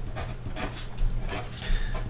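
Pencil scratching on paper in a run of short, uneven strokes as a line of working is written out.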